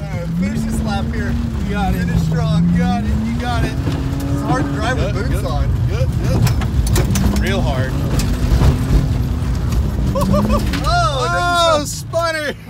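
BMW E36 inline-six engine heard from inside the cabin, revving up and falling back again and again as the car is drifted on dirt, with shouting and laughter over it, loudest near the end.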